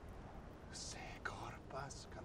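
A man's voice, faint and whispered, with a hissing s-sound a little under a second in and soft speech after it.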